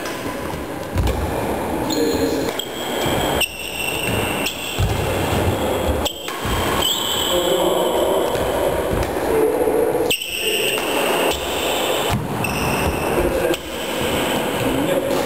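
Badminton rally in a reverberant sports hall: sharp racket hits on the shuttlecock and footsteps on the wooden floor, with short high squeaks from shoes, over a steady background murmur of the hall.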